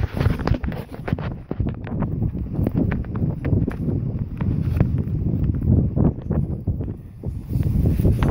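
Running footsteps on grass and pavement, a quick irregular run of thuds, with the phone jostling and wind rumbling on the microphone.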